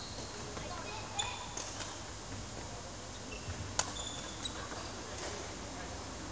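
Badminton rally: sharp cracks of rackets hitting the shuttlecock, the loudest about four seconds in, with short high squeaks of shoes on the wooden court floor over a steady low hum.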